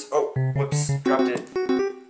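Piano or electric-piano music, a run of held notes changing every fraction of a second, with a voice briefly at the start.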